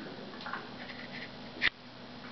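A single sharp click about 1.7 seconds in, over a faint steady hum and a few small faint ticks.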